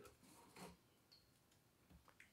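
Near silence, with faint rustling and a light tick or two as sidewall string is pulled through a lacrosse head's mesh loop.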